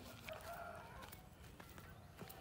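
A rooster crowing once, faintly, the call ending about a second in.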